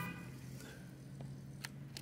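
Low, steady hum of a camera's zoom motor as the lens zooms out, with a couple of faint clicks near the end.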